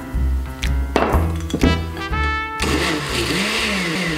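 Background music with a steady beat, then a countertop blender starts about two and a half seconds in and runs on with a steady whirring noise, mixing heavy cream into the liqueur base.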